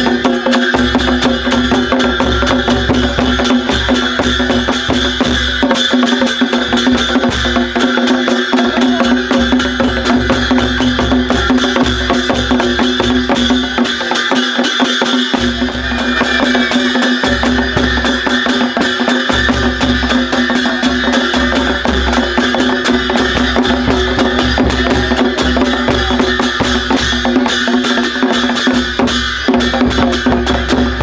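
Folk drumming with brass hand cymbals keeping a fast, steady beat for dancing, over a steady held tone.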